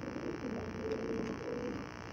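Domestic pigeons cooing, a low continuous murmur.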